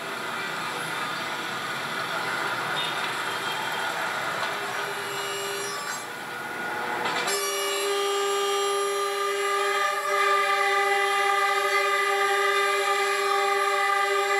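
Street traffic noise, then the Reunification Express's diesel locomotive horn: a short toot, and from about halfway through one long, steady blast that is the loudest sound.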